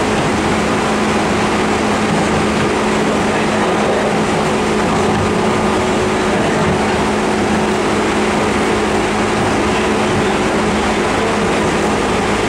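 Cabin running noise of a JR 201 series electric commuter train at a steady speed: a loud, even rumble of wheels on rail with a steady hum running through it.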